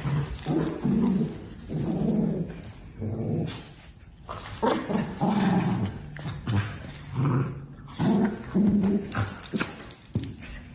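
Small dogs, a miniature dachshund among them, growling in a string of short, low growls while they play-fight over a blanket.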